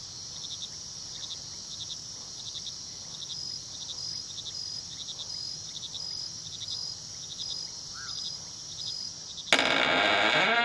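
Crickets chirping in short, evenly repeating pulses as night ambience. Near the end a wooden door suddenly creaks open loudly, with a wavering creak.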